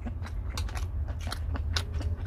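A person eating Korean cold noodles (naengmyeon): short slurping and chewing sounds, over a low steady hum.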